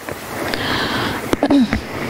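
A sniff, a breath drawn in through the nose close to the microphone, followed about a second and a half in by two small clicks and a short falling voiced sound.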